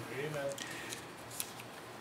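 Faint crisp rustles and small ticks of thin book pages being handled, the clearest a little past the middle.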